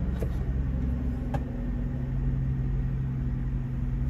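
Steady low hum of a semi truck's engine idling, heard inside the cab, with two faint clicks in the first second and a half.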